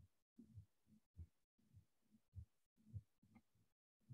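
Near silence on a video call: only faint low murmurs, about two a second, cutting in and out with dead silence between.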